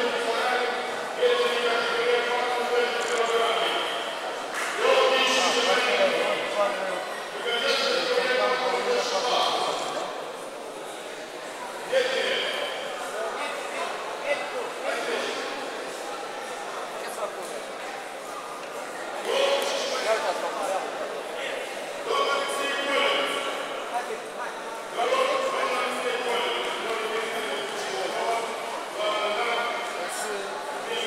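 Spectators' voices echoing in a large sports hall: loud, overlapping calls and chatter that come in bursts of a few seconds, with no clear words.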